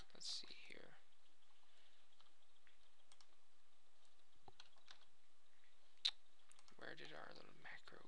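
Computer mouse clicking as windows are switched: a few faint clicks and one sharper click about six seconds in. A brief wordless murmur of a man's voice comes just after it.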